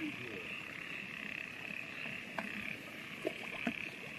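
A chorus of frogs calling steadily from the flooded field, a continuous high-pitched trilling hum, with a few faint clicks.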